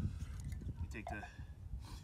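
Quiet handling of small PVC pipe fittings, with a brief rubbing scuff near the end. A faint voice is heard about halfway through.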